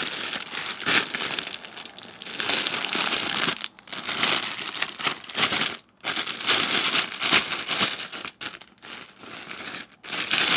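Clear plastic shipping bag crinkling as hands handle and work it open, in irregular bursts with two brief pauses, about four and six seconds in.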